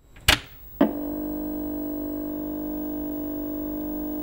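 Opening of a song's intro: two sharp hits about half a second apart, then a steady held chord that sustains unchanged.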